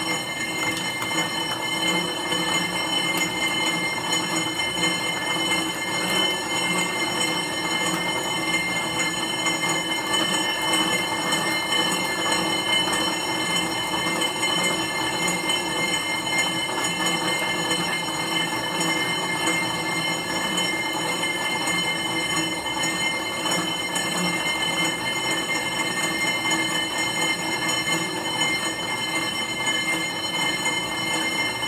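Stationary exercise bike pedalled hard: a steady whir with several constant high whining tones, holding even throughout.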